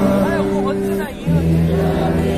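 Live band music: held keyboard chords over bass, with a voice gliding up and down in pitch during the first second. Just after the middle the sound dips briefly, then a stronger low bass note comes in.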